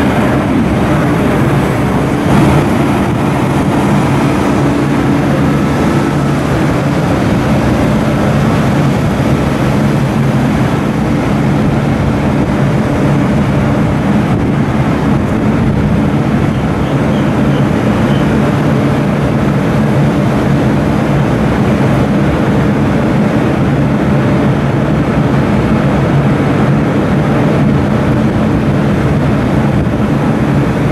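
Double-deck electric passenger train at a station platform, running with a loud, steady mechanical hum and low drone.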